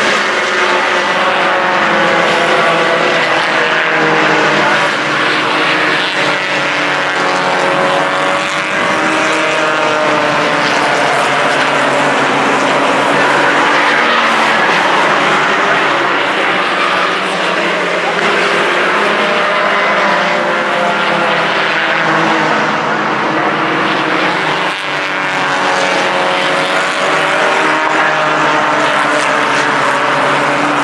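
Four-cylinder stock cars racing on a short oval track, their engines running hard, with engine pitch rising and falling as cars go past.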